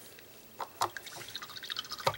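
A paintbrush being rinsed in a water basin: light watery splashing and dripping, heard as a quick run of small ticks.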